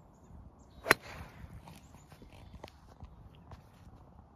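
Golf club striking a ball off the turf: a single sharp crack about a second in.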